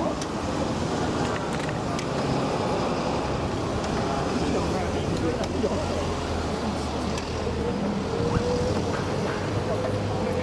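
Steady trackside rumble of an electric commuter train running on the line, mixed with street traffic noise, with a faint steady whine coming in near the end.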